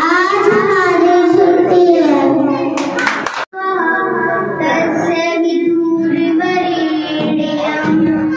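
Young girls singing into a handheld microphone, holding long wavering notes. About three seconds in there is a short crackle and a sudden break, then a second girl's voice takes up the singing.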